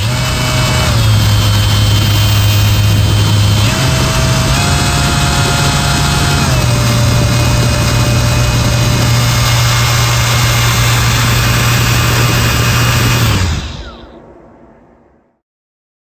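Brushless 2000 W 48 V ebike motor running free on the bench, a steady whine with air rushing through its drilled end plate from the internal cooling fan. The pitch steps down and up a few times as the speed changes, then falls away as the motor winds down near the end.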